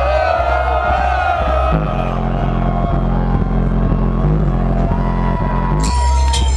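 Dub reggae played loud over a sound system from vinyl, with heavy bass and a wavering melody line early on. About two seconds in, the deepest bass drops away, leaving a higher bassline pattern, and the full bass comes back just before the end.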